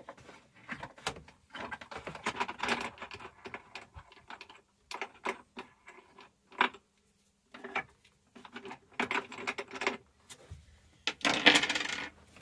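Wing nuts being unscrewed by hand at the base of a removable metal camper kitchen pod: irregular small metallic clicks and rattles, pausing briefly about seven seconds in and growing louder near the end.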